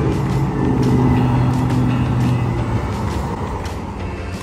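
Road traffic at a street intersection: a vehicle engine's steady hum that fades out about three seconds in, over background music.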